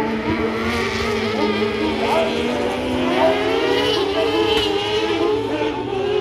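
Engines of several kart cross buggies running at race speed on a dirt track, overlapping one another and revving up in pitch a couple of times as they pass.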